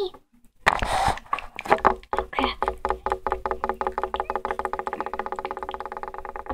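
A child's voice making a wordless sound: a short breathy burst about a second in, then a long, rapid, pulsing trill held on one pitch.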